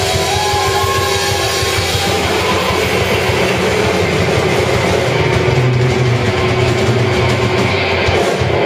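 Live rock band playing electric guitars, bass, drums and keyboard, a loud, continuous wall of sustained chords. The bright top end drops away in the second half.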